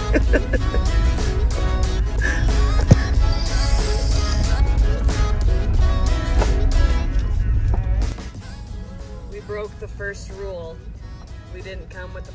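Background music over a heavy low rumble of the electric truck driving on a rough dirt track. The rumble drops away about eight seconds in, leaving the music and a voice.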